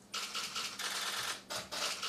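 Press photographers' camera shutters clicking in quick irregular runs, over a faint steady low hum.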